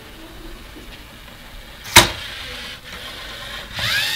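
LEGO Mindstorms robot's small electric motors running with a low, steady whir. A single sharp click comes about two seconds in.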